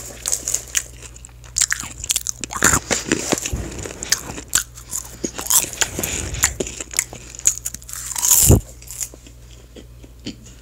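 Close-miked crunching and chewing of popcorn, a run of irregular crisp crackles, with a louder burst of noise about eight and a half seconds in before it goes quieter.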